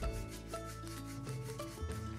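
Paintbrush stroking wet tempera paint across paper, under soft background music of held notes that change every half second or so.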